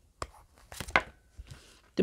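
Tarot cards being handled: three or four short, sharp snaps with light rustling between them as a card is drawn from the deck and laid on the table.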